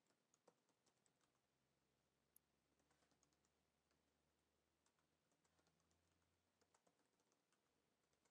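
Near silence with faint computer keyboard typing: scattered key clicks in short runs.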